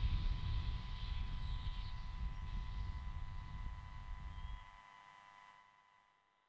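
Distant low rumble of a Falcon 9's Merlin first-stage engines during ascent, weakening steadily and dying away about five seconds in.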